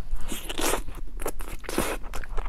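Close-miked eating: a person biting into and chewing a cola chicken wing, a quick run of short, sharp bite and chew sounds.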